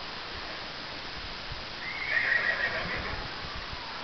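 A horse whinnies once, about two seconds in, for about a second, over faint hoofbeats on arena dirt.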